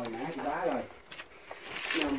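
A person's short wordless vocal sounds, rising and falling in pitch, followed near the end by a brief rustle.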